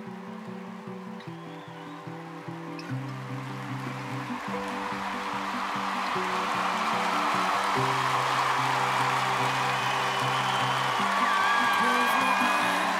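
A theatre audience's applause and cheering build into a standing ovation, growing steadily louder, with shrill cheers and screams near the end. Music with a steady repeated low figure plays underneath.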